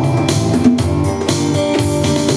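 A small live band playing an instrumental passage between sung lines, with keyboard and a hand-played drum keeping a steady beat.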